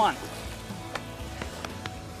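Water splashing and fizzing against a boat's hull as a released marlin swims off, with a few sharp clicks.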